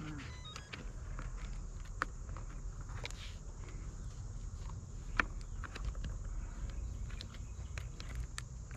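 Outdoor handling noise: low wind rumble on the microphone and a steady high drone, with a few sharp clicks and knocks as the foam RC wing is handled, the loudest about five seconds in.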